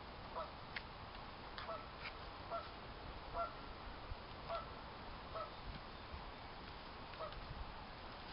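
Geese honking, short calls repeated about once a second, with a couple of faint clicks of a digging tool in the soil.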